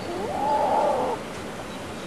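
Common loon giving a single wail: one call that rises in pitch and then holds for about a second before stopping.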